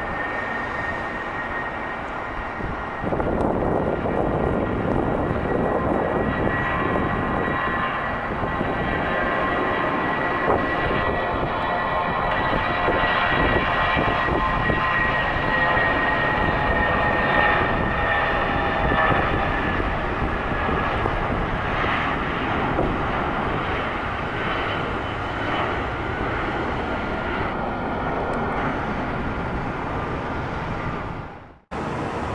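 Airbus A320-232 jet airliner on its takeoff roll and climb-out, its IAE V2500 turbofans at takeoff thrust: a steady high engine whine over a loud roar that steps up about three seconds in. In the second half the whine drops slightly in pitch as the jet moves away.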